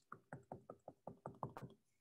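Stylus tip tapping on a tablet screen, one click per short hatch stroke: a run of about ten faint quick ticks, roughly five or six a second, stopping shortly before the end.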